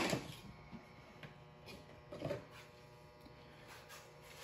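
Quiet room with a faint steady mechanical hum, a sharp click at the very start and a short muffled sound a little past two seconds in.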